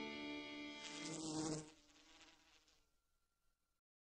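A fly buzzing in a steady drone. It cuts off sharply a little over a second and a half in and then fades away to silence.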